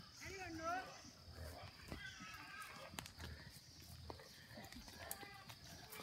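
Small herd of cattle walking down a dirt track, faint and scattered hoof steps, with a brief wavering voice-like call about half a second in.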